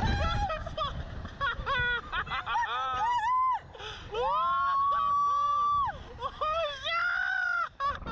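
A man and a woman screaming and laughing while being flung on a slingshot ride, with short rising and falling yells and one long held scream about halfway through.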